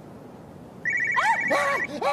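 Mobile phone ringtone, a rapid electronic trill starting about a second in. A man cries out in fright over it.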